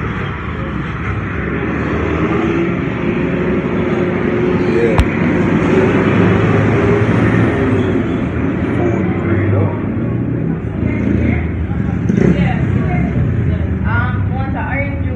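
Street traffic: a vehicle engine hum that swells and fades over several seconds, with voices in the background and a single sharp click about five seconds in.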